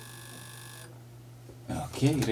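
A short electronic beep about a second long, made of several steady high pitches, over a constant low hum; speech starts again near the end.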